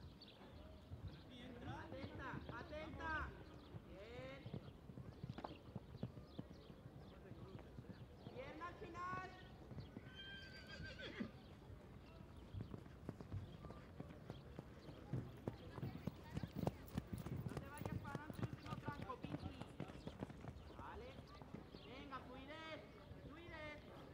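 Hoofbeats of a horse cantering on sand arena footing: a continuous run of dull thuds, densest in the second half, with voices rising over them at times.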